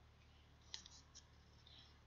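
Near silence with two faint clicks of a computer mouse, about half a second apart, over a low steady hum.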